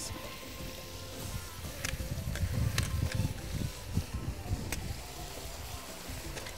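Raw bone-in meat pieces being put by hand into a large aluminium cooking pot of fried onions, giving soft low thuds and a few light clicks against the pot from about two seconds in.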